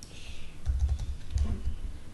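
Typing on a computer keyboard: a few short keystroke clicks, with two dull low thuds about a second in and near the end.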